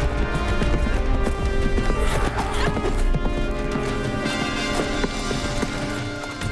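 Horse hoofbeats and a horse whinnying, over background music.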